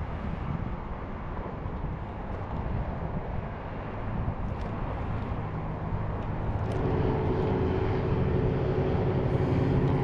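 Engines of a group of low-flying airplanes: a steady hum that comes in about two-thirds of the way through and grows louder as they approach.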